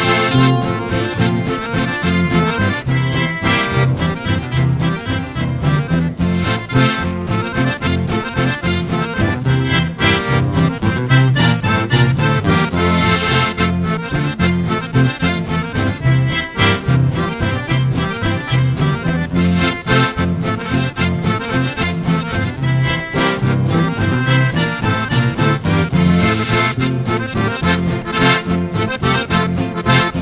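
Instrumental passage of a valseado, an Argentine country waltz, played by a band with an accordion carrying the melody.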